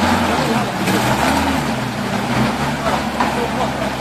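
A vehicle engine running with a low steady hum, its note stepping up and down a few times, over a constant rushing noise.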